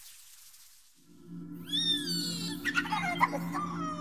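Synthesized sci-fi sound effects: a steady low electronic hum starts about a second in, and warbling electronic chirps swoop up and down in pitch above it.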